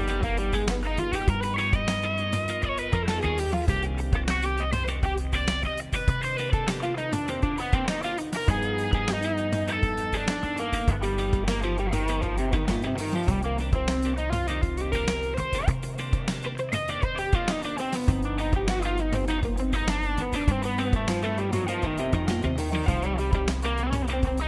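Electric guitar, its tone from a Neural DSP Quad Cortex, improvising quick single-note runs over a jazz-fusion backing track with bass and drums. The track loops a G7 altered chord to C minor, the five-to-one in C minor.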